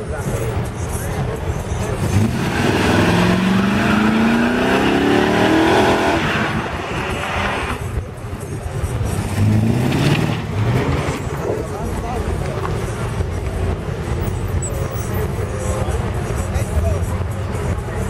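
Fourth-generation Chevrolet Camaro doing a burnout. The engine revs up and climbs in pitch while the rear tyres spin on the asphalt in a long squealing rush, then drops off; a second, shorter rev follows a couple of seconds later.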